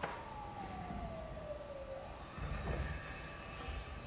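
The opening of a promotional video's soundtrack, played faintly through the room's speakers: a single tone sliding slowly down in pitch for about two seconds, with a click at the start and another about two-thirds of the way through.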